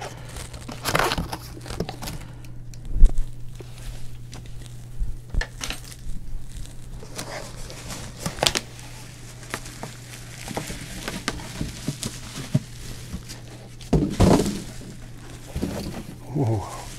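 Bubble wrap and cardboard crinkling and rustling as a bubble-wrapped clear plastic enclosure is handled and lifted out of its shipping box, in irregular crackles, with a sharp knock about three seconds in and a louder burst of rustling near the end.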